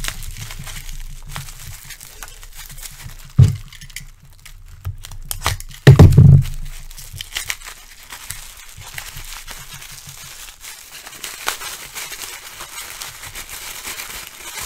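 Bubble wrap crinkling and crackling as it is crumpled and pulled open by hand to unwrap a small die-cast model car. Two loud, dull thumps come through, a few seconds in and again about six seconds in.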